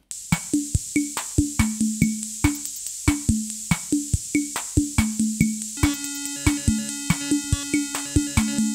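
Baleani Solista analogue accompaniment unit playing its drum section, an even pattern of about three hits a second, over a steady high-pitched whine. Held keyboard accompaniment notes join about six seconds in. The bass section is switched off.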